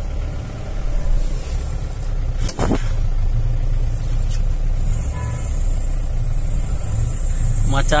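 A van's engine running at low speed in slow traffic, heard from inside the cabin as a steady low rumble. A single knock comes about two and a half seconds in.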